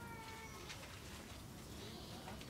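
A single drawn-out vocal call, falling slightly in pitch and trailing off about half a second in, over faint murmur and a few light clicks.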